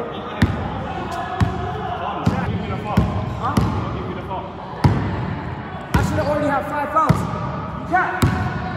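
Basketball dribbled on the wooden floor of a large sports hall: about nine bounces at an uneven pace, roughly one a second.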